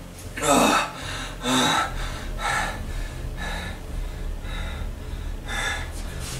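A man gasping and breathing heavily, about one ragged breath a second, the first two the loudest and partly voiced, over a low steady hum.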